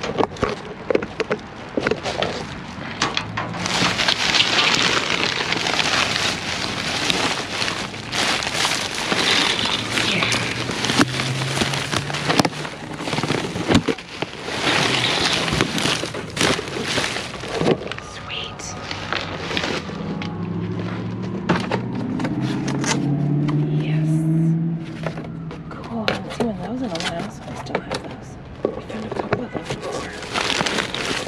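Thin plastic trash bags and plastic film rustling and crinkling, with many sharp crackles, as they are pulled and pushed aside by gloved hands. A low wavering drone comes in briefly around the middle and again for a few seconds past two-thirds of the way.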